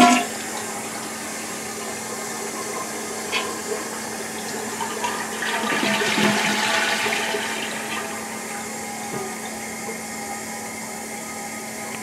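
Rushing water that swells about five to seven seconds in and then slowly dies away, over a faint steady hum.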